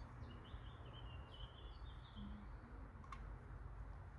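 A small bird chirping in a quick series of short high notes, mostly in the first two seconds, over a faint steady low rumble. A single sharp click comes about three seconds in.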